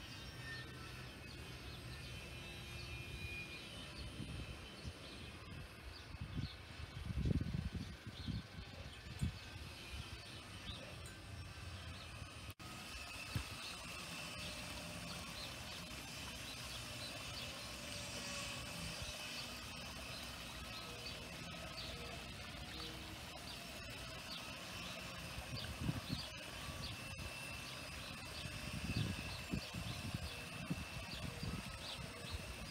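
Small songbirds chirping outdoors in short repeated notes, with a few low bumps about seven seconds in and near the end.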